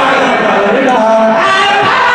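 A crowd of men chanting a zikr (Sufi remembrance of God) together, many voices at once, loud and steady.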